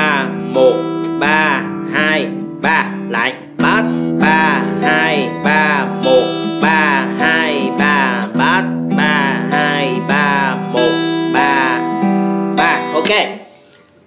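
Acoustic guitar fingerpicked in a slow ballad pattern: a bass note, then the treble strings picked in turn (3-2-3-1-3-2-3), moving through a chord progression with the bass note changing every two seconds or so. The playing dies away about a second before the end.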